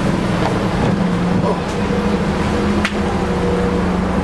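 Bus engine running with a steady low hum, and a single sharp click about three seconds in.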